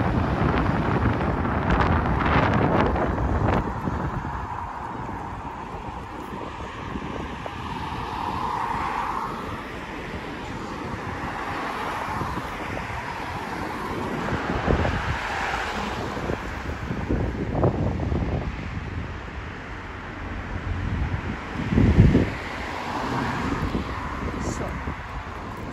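Cars passing on a road, with wind buffeting the microphone; the strongest wind thump comes near the end.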